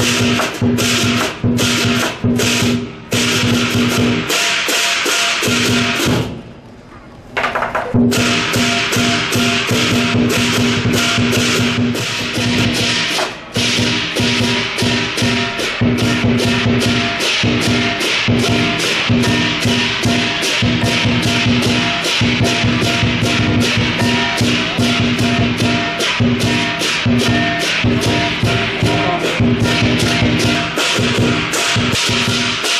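Lion dance percussion: a large Chinese drum and clashing hand cymbals playing a fast, even beat. The playing drops out briefly about six seconds in, then resumes.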